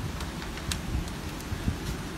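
Wind buffeting the microphone: an uneven low rumble over a steady hiss.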